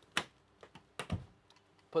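Fold-up Murphy bed being swung up and pressed closed against the wall: several sharp clicks, the loudest near the start, and a dull thud about a second in as the panel seats.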